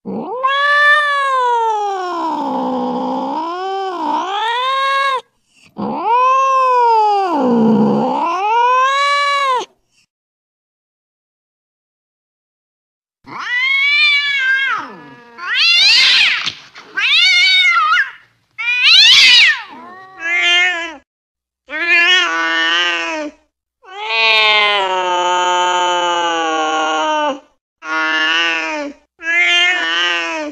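Cats yowling in a fight: two long yowls of about four seconds each that sink and rise in pitch, then a pause of about three seconds and a run of shorter, rising and falling yowls and cries.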